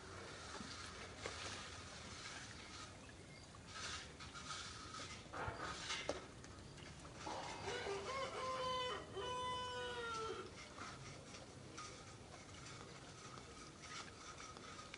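A rooster crowing once, a call of about three seconds that starts about halfway through, holding a fairly steady pitch in a few steps before it trails off. Faint rustling and a few short knocks lie around it.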